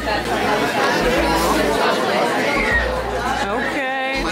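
Indistinct chatter of several voices in a busy café room.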